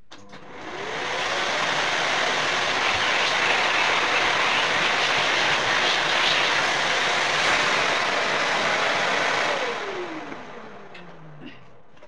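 Vacuum cleaner switched on, its motor whining up to speed and running with a steady rush for about eight seconds. It is then switched off, and the motor winds down with a falling whine.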